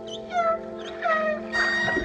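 Humpback whale song: two downward-sweeping, moaning cries about half a second and a second in, then a higher, held call near the end, over held musical notes from the score.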